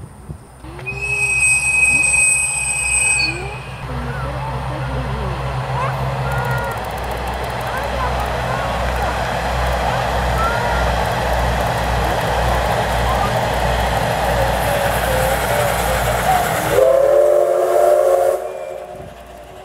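SL Ginga steam train (C58-class steam locomotive with KiHa 141 series coaches) passing close by, with a steady run of wheel-and-rail noise and rhythmic clatter over the rail joints. A high steady tone sounds for a couple of seconds near the start, and the locomotive's chime-like steam whistle starts blowing about a second before the end.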